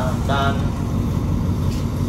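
Steady low rumble of a diesel-hauled passenger train idling at the platform, with a single word of a Thai station announcement at the start.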